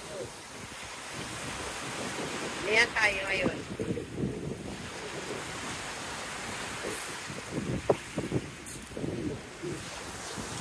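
Sea waves washing onto a pebble beach, with wind buffeting the phone's microphone. A voice calls out about three seconds in, and a few crunching footsteps on the pebbles come near the end.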